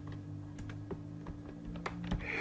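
Computer keyboard being typed: a run of light, irregular key clicks over a faint steady hum.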